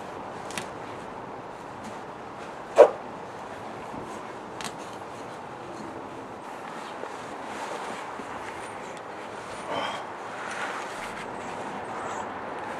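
Steady outdoor background noise with a few faint clicks. One short, sharp, loud sound stands out about three seconds in, and a weaker one comes near ten seconds.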